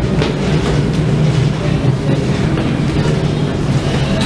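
Steady low drone of the M/V Kaleetan's engines and machinery while the ferry is underway, heard inside the vessel, with a hum held at a few low pitches under a rumbling noise.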